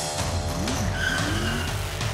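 Cartoon race-car engine sound effect revving as the accelerator pedal is pressed, its pitch sliding up and down, over loud background music.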